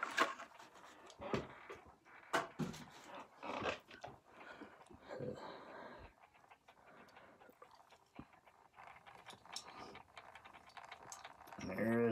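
Faint handling noises as a packaged die-cast toy car is taken out: scattered short clicks and rustles of plastic and cardboard, several in the first few seconds.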